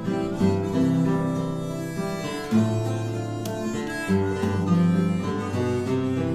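Instrumental interlude of a folk song: acoustic guitar accompaniment with a harmonica playing the melody in sustained notes.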